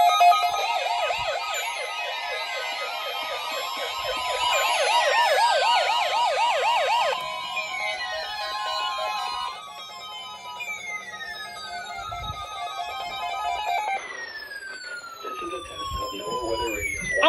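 Several NOAA weather alert radios sounding their alarms together for a weekly test / tornado drill, a layered mix of fast warbling tones and repeated falling chirps. The warbling drops out about seven seconds in, and other tones stop around ten and fourteen seconds, leaving the falling chirps running.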